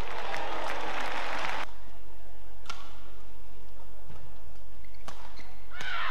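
Arena crowd applauding after a badminton point, cutting off abruptly about a second and a half in. A quieter stretch follows with a few isolated sharp clicks, and crowd voices rise again near the end.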